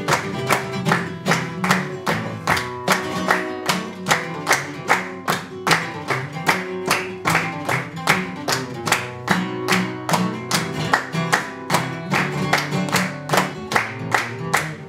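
Flamenco guitar playing with hand clapping (palmas) in a steady, fast rhythm, the sharp claps standing out over the strummed and plucked strings.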